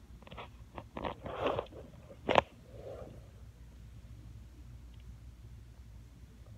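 Handling noise from the recording device being moved: a few rubs and knocks over the first two seconds and one sharp click at about two and a half seconds, then only a faint low hum.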